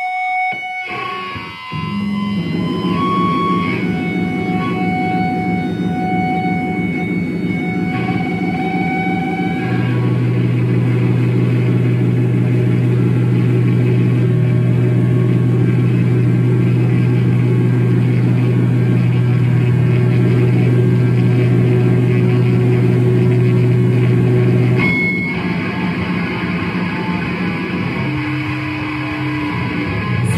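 Heavily distorted electric guitars played live through amplifiers, holding long sustained droning chords, with high steady feedback whistles over them in the first ten seconds. A deep held low note dominates from about ten seconds in, and the sound drops back near the end.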